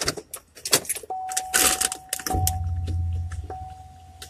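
Keys jingling and a snack bag crinkling inside a car. About a second in a steady high electronic chime tone starts and holds with brief breaks, and a low rumble joins it about halfway.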